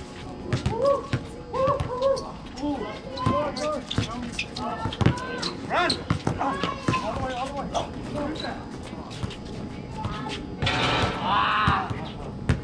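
A basketball bouncing on a painted hard outdoor court, dribbled in irregular runs of sharp bounces, with players' voices calling out now and then. A louder, denser burst comes about a second before the end.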